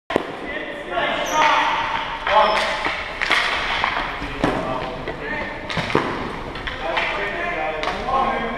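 Indistinct calls and shouts of players echoing in a gymnasium, broken by several sharp clacks of hockey sticks striking the ball and floor.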